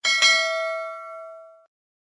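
A bell-like metallic ding sound effect on an outro card: two quick strikes, then a ringing tone that fades over about a second and a half and cuts off.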